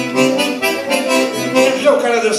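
Eight-bass diatonic button accordion playing a quick melody of short notes over chords, a forró-style demonstration phrase.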